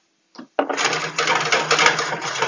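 Spice grinder grinding seasoning into a pan: a dense, rapid crunching that starts about half a second in and runs for about two seconds.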